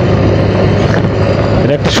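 Suzuki Gixxer motorcycle's single-cylinder engine running steadily at cruising speed, a low even hum under loud wind and road noise on the camera microphone.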